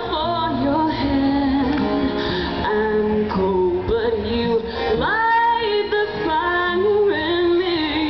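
A woman singing live into a microphone over her own strummed steel-string acoustic guitar; about five seconds in she slides up into a long held note.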